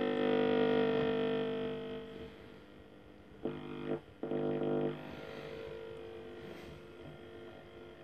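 Schaub-Lorenz Touring 30 transistor radio being tuned across the dial: a station playing music fades out as the knob turns, two short bursts of another station come through about three and a half and four and a quarter seconds in, then only a faint signal remains.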